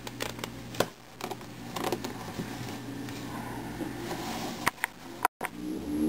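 Plastic 3x3x3 Rubik's cube being turned and handled: a few light clicks as the layers turn, with soft rubbing in between. The sound drops out very briefly about five seconds in.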